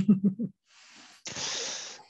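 A woman's short laugh, then about a second in a breathy hiss of air, an exhale close to a microphone, fading toward the end.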